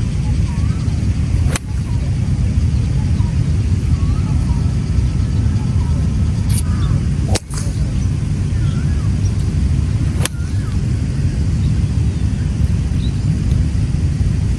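Sharp cracks of an iron striking golf balls off turf, four strikes spread through, over a loud, steady low rumble.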